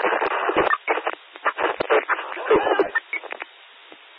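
Police two-way radio traffic heard through a scanner: short, unclear voice transmissions in the narrow, tinny band of a radio channel, with clicks between them. Near the end the channel drops to a faint hiss.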